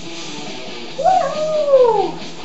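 A single loud howling cry about halfway through, jumping up quickly and then sliding down in pitch over about a second, over quieter guitar music.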